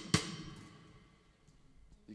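Drum kit: two quick drum hits with a cymbal crash on the second, the cymbal ringing out and fading over about a second and a half.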